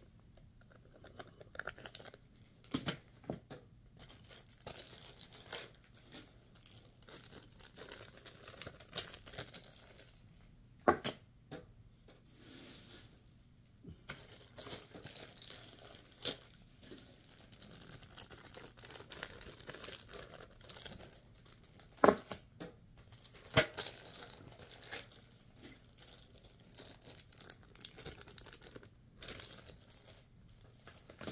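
Plastic packaging being torn open and crinkled, rustling on and off, with several sharp clicks or taps, the loudest about a third of the way in and again past two-thirds.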